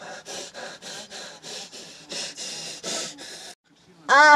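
A young woman gasping for breath in quick, ragged pants, about three a second, stopping abruptly just before the end.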